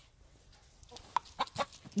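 A hen giving a few short, quiet clucks as she is picked up and held, after a near-quiet first second.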